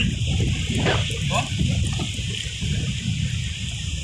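Wind noise on the microphone over choppy sea water sloshing around a person standing waist-deep, with a short shout about a second in.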